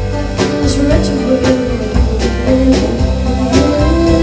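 Live country-folk band playing: acoustic and electric guitars, bass and drums keeping a steady beat, with a woman singing.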